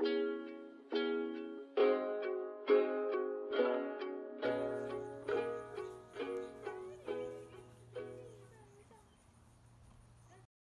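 Acoustic guitar chords struck slowly, about one a second, each ringing out and dying away, getting quieter toward the end as the song closes. A steady low hum joins about halfway through.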